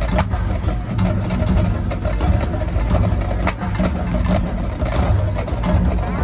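Marching band playing loud, heavy in low brass and drums, with frequent percussion strikes over held chords.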